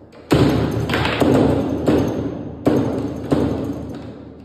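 Foosball play: the ball struck hard by the plastic figures and the steel rods banging against the table. There are about five loud knocks, starting a moment in, each trailing off in a clattering rattle.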